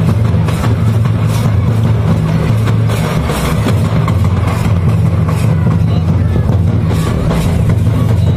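Large drums beaten by hand-held sticks in a crowd, making a dense, steady low rumble with faint irregular beats, mixed with crowd voices.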